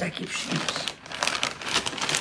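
Plastic shopping bag and gift wrapping crinkling and rustling irregularly as hands rummage in it and pull a present out.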